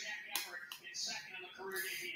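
Faint voices in the background, well below the level of close speech, with a brief click about a third of a second in.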